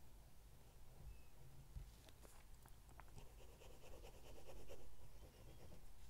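Steel fine nib of a Waldmann Tuscany fountain pen writing on paper, with faint scratching and a few light ticks. It is loudest during a stretch of back-and-forth scribbling from about three to five seconds in.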